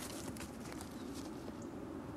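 Faint, quick footfalls of a dog running on grass, thickest in the first half second, over a low steady outdoor background.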